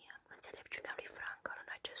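A woman reading aloud in Romanian in a hoarse whisper, her voice reduced by a bad laryngitis.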